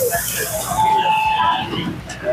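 Busy street-food stall ambience: background voices chattering, with short held tones that may be music. A brief hiss cuts off just as it begins.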